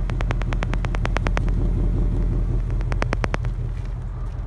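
2016 Ford Mustang GT's 5.0-litre V8 idling steadily, heard close to its exhaust tip. A rapid run of sharp ticks, about ten a second, sits over it for the first second and a half and again briefly about three seconds in.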